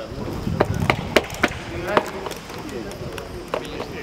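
Footballs being kicked on a grass pitch: several sharp knocks in the first two seconds and two more near the end, with men's voices calling in the background.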